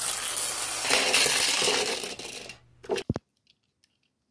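Small plastic spinning-top toy whirring and rattling as it skids across a hard ceramic sink counter, running down after about two and a half seconds. A couple of sharp clicks follow, then the sound cuts off.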